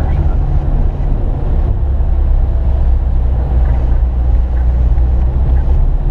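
Vehicle engine and road rumble heard from inside the vehicle as it drives slowly through shallow floodwater on a street, a steady low drone with a wash of tyre and water noise over it.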